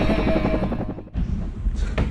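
Helicopter rotor chop mixed with music as an intro sound effect, cutting off abruptly about a second in and giving way to quieter shop background.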